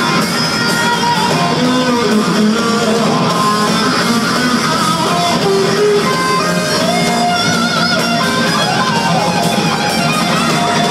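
Live hard rock band playing in an arena, heard from the crowd. An electric guitar plays a lead line with bending, sliding notes over bass guitar and drums, with no vocals.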